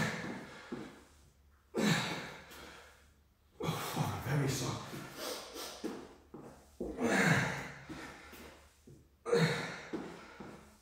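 A man's heavy, voiced breaths and grunts as he works through dumbbell lunges, one forceful exhale roughly every two seconds, each starting sharply and then fading.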